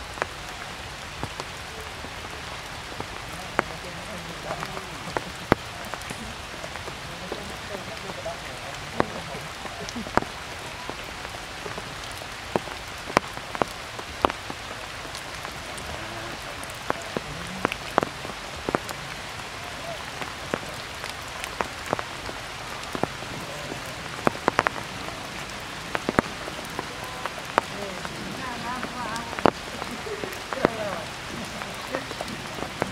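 Heavy rain falling on forest foliage, a steady hiss with frequent sharp, irregular taps of drops striking close by.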